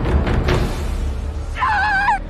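Tense film score over a deep low rumble, with a sharp hit about half a second in. Near the end comes a short, high, wavering cry.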